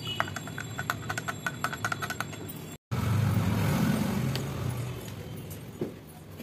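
A metal spoon stirring in a glass, clinking rapidly against the sides with a short ringing after each tap. After a sudden break about halfway, a louder, steady low rumble takes over.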